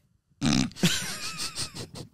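A man's grunt, then breathy, snorting, stifled laughter, starting about half a second in.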